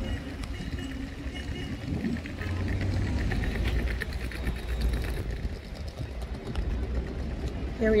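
Outdoor ambience: a steady low rumble, typical of wind on a phone microphone and distant traffic, with faint voices in the background. A woman begins speaking near the end.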